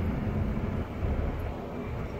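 Low, steady rumble of a car's engine and tyres, heard from inside the cabin while driving slowly.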